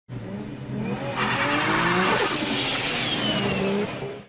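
Car sound effect for a logo intro: an engine revving with its pitch climbing, and a loud hissing tyre screech in the middle.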